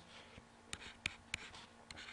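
Pen stylus writing on a tablet surface: faint scratching with four light, sharp ticks in the second half as the pen taps down between strokes.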